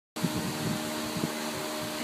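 Steady machine-like hum with a low hiss, with a few soft low bumps near the start and again a little after a second.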